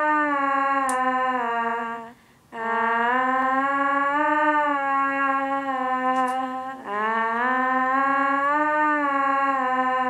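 Wordless female vocal holding long, smooth notes of about four seconds each, the pitch swelling slowly up and down, with a short break about two seconds in.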